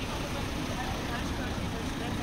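Street ambience of steady car-traffic noise from the adjacent road mixed with indistinct chatter of passing pedestrians.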